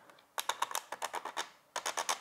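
Cameradactyl Mongoose film holder jogging 35mm film along as its control knob is turned: a quick run of small clicks, breaking off briefly past the middle and then picking up again.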